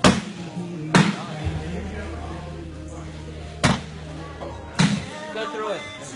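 Cornhole bags landing on a wooden cornhole board: four sharp thuds, one at the start, one about a second in, and two more about three and a half and five seconds in.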